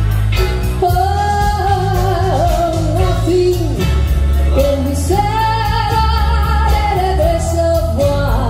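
A woman singing a slow ballad live into a handheld microphone, holding two long notes, over music accompaniment with a steady beat.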